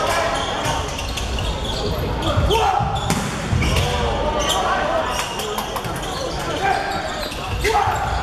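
Indoor volleyball rally in a large hall: sharp slaps of the ball being hit, mixed with players shouting and spectators' voices. A loud hit comes near the end as a player attacks at the net.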